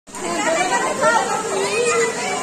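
Several people chattering at once, with high voices among them.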